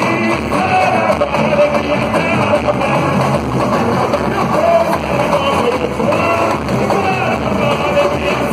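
Samba-enredo performed live: a lead singer and chorus singing over samba-school percussion with a steady beat.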